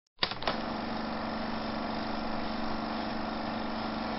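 A steady buzzing hum with a low tone held through it, starting with a click just after the beginning.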